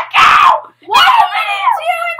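A child's voice screaming loudly: a short harsh scream, then about a second later a longer wavering cry whose pitch bends up and down.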